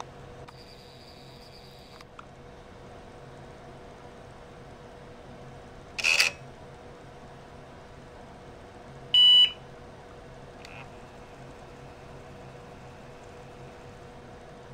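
IBM PS/2 Model 30 running with a steady fan hum. A brief mechanical clatter comes about six seconds in, then a single short beep from the PC speaker about nine seconds in: the power-on self-test beep as the machine starts to boot.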